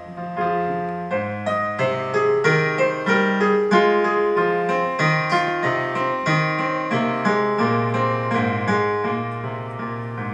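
Casio digital piano playing a flowing passage of many quick notes over held bass notes, growing louder over the first few seconds and easing slightly toward the end.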